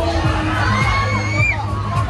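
Riders on a Miami-style fairground ride screaming and shouting as they are swung up. One long high scream comes about a second in, over fairground music with a thumping bass beat.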